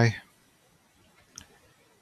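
A single sharp click of a computer keyboard key, about one and a half seconds in, against a quiet room.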